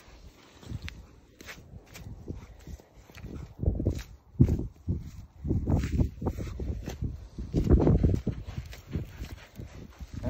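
A goat hide being cut and peeled back from the carcass with a knife: irregular rustling and scraping of hair and skin with dull thumps as the hide is pulled, loudest about midway and again near the end.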